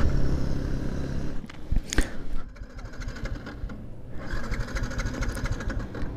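Yamaha MT-15 single-cylinder engine running steadily, then cutting out about a second and a half in as the fuel tank runs dry. Near the end the electric starter whirs as it cranks without the engine catching.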